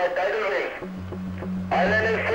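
A voice that the speech recogniser did not write down, over background music; a low, steady drone note comes in about a second in.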